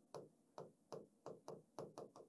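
Faint, quick ticks and scratches of a marker pen writing on paper, about three or four strokes a second.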